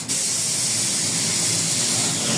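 Steady high hiss of air released from the custom suspension of a modified Volkswagen Beetle as it is worked. The presenter calls it hydraulic suspension.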